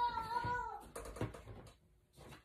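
A high, drawn-out vocal sound, falling slightly in pitch, over the first second, followed by soft rustling.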